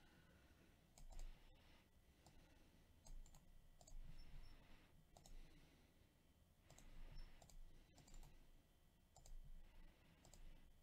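Faint clicks of a computer mouse, about a dozen short clicks spaced unevenly, over near-silent room tone.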